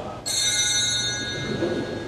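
A small metal altar bell, struck once about a quarter second in, rings out with a clear, high, shimmering tone that fades over about a second and a half.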